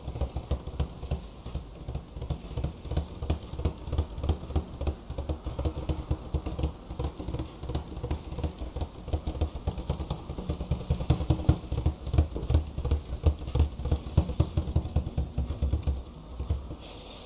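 Rapid fingertip tapping on a hard white object held in the hand: a dense, uneven run of many short taps a second, louder in the second half.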